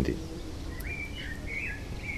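A songbird chirping: a few short, high, warbling notes from about a second in, over steady low background noise.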